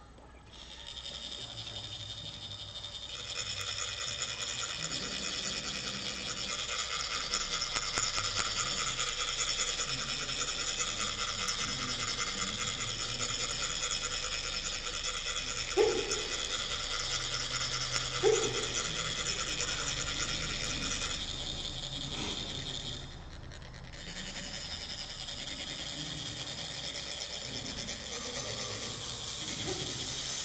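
Metal chak-pur sand funnels being rasped, a rod drawn along their ridged sides to trickle coloured sand onto a sand mandala, making a steady, fast metallic rasp with a ringing edge. It briefly thins a little after two-thirds of the way through. Two short, louder squeaks cut in about two seconds apart, just past the middle.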